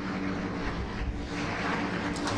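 A steady machine-like hum with a rushing noise over it.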